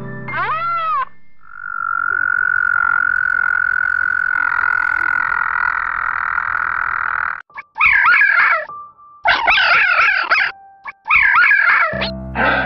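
A frog calling one long, steady, high-pitched trill for about six seconds. It cuts off, and three short bursts of wavering, high-pitched calls follow.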